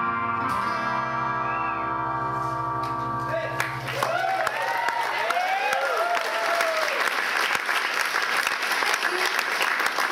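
A band's final chord rings out on electric guitar for about four seconds, then cuts away into audience applause with whoops and cheers.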